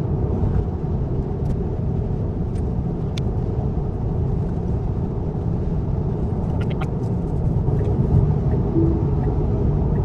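Steady road and tyre noise inside a Tesla electric car's cabin cruising on the highway at about 70 mph, with no engine sound. A few faint clicks come through.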